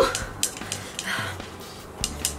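A woman's rising, pained whimper at the burn of spicy noodles breaks off at the very start. Then it goes fairly quiet, with a few light clicks and a soft breath.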